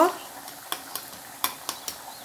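A metal fork tapping against pieces of oven-baked pork belly on a foil-lined tray, four light clicks over a steady faint hiss.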